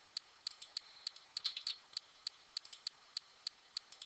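Computer keyboard keys being typed, faint, with about twenty quick clicks at uneven spacing as a password is entered.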